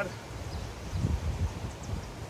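Wind rumbling on the microphone outdoors, with a couple of stronger gusts around the middle.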